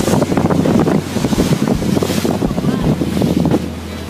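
Wind buffeting a phone's microphone aboard a boat at sea, a loud, ragged rumble over the rush of the water.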